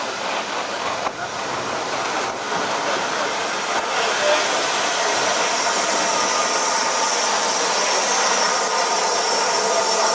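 Steam hissing from the Merchant Navy class steam locomotive Clan Line, a steady hiss that grows gradually louder.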